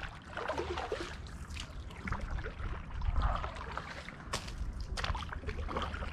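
Kayak paddle working the water, with water trickling and dripping off the blade, and two sharp clicks in the second half.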